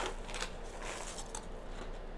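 A few faint clicks and rustles from a foam drink cup being sipped from and handled, over low room noise.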